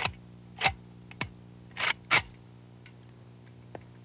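Semi-automatic AK-47 look-alike rifle being handled and readied to fire: a few sharp metallic clicks and clacks, the loudest a little after half a second and just after two seconds, then a faint click near the end.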